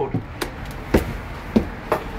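Four sharp knocks and taps over a low steady rumble, typical of a handheld camera being knocked about as it is moved.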